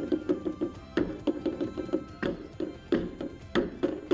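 Background music with a quick plucked rhythm throughout, over which a fork pricking holes in puff pastry gives a handful of sharp taps as its tines strike the tray beneath.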